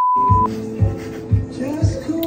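A steady, high-pitched edited-in beep, like a censor bleep, that cuts off about half a second in, followed by background music with a steady beat about twice a second.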